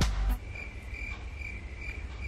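A cricket chirping: a thin, high trill that pulses a few times a second over a low, steady hum.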